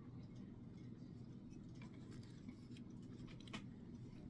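Faint sipping and swallowing of iced coffee from a mug over a low room hum, with a few soft clicks, the clearest about three and a half seconds in.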